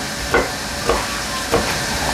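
A steady hiss with a few light knocks of a kitchen knife on a plastic cutting board as garlic is crushed and cut.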